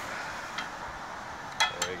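Steel bolt cutter jaws being worked off a hardened lock shackle: two sharp metallic clicks close together near the end, with a fainter click earlier. Steady outdoor background noise underneath.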